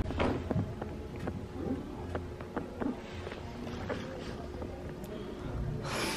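Faint indoor background of quiet music and distant voices, with a few small clicks and a brief rustle near the end.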